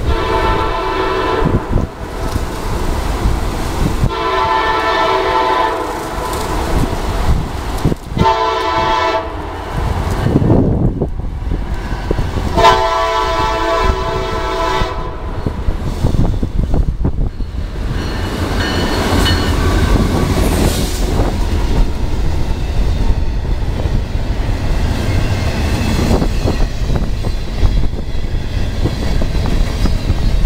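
A CSX freight locomotive's horn sounds four blasts: long, long, short, long. This is the standard grade-crossing signal. Afterwards the rumble of the double-stack intermodal train grows as it comes up and passes, with wind buffeting the microphone throughout.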